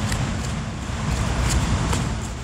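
Wind buffeting a phone's microphone as the person holding it jogs: a steady low rumble with irregular thuds of handling and footfalls.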